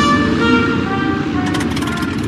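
Held music notes fading out over a low rumble, then a rapid run of rattling clicks starting about three-quarters of the way in.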